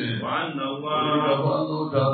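A man chanting Arabic religious recitation, holding long melodic notes that bend up and down.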